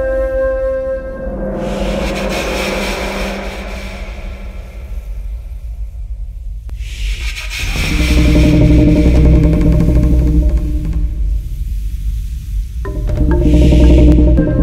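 Ambient instrumental background music: held tones give way to a swelling hiss, and about halfway through a louder passage with deep bass comes in.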